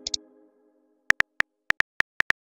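Simulated phone-keyboard key taps from a texting-story app: short, identical clicks at an uneven typing pace, starting about a second in as a message is typed. They follow the fading tail of a message chime and two quick ticks at the start.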